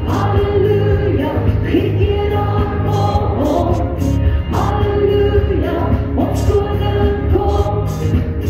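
A woman singing a gospel song into a microphone over instrumental accompaniment, with a steady bass line under the voice.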